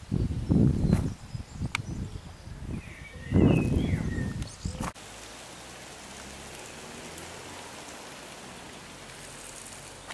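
Wind buffeting the camcorder microphone in two gusts of low rumble, with a brief high chirp during the second. About five seconds in, the sound cuts to a steady outdoor background hiss with a faint low hum.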